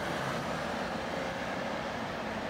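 Steady road traffic noise: cars driving past on a busy multi-lane city road.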